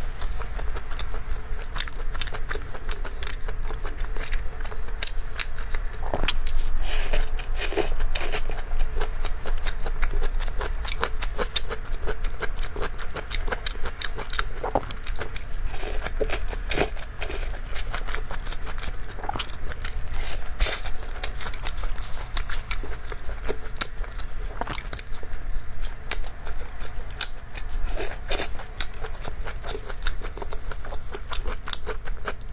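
Close-miked eating: biting and chewing soft, saucy skewered food, with many short wet clicks and smacks throughout, over a steady low hum.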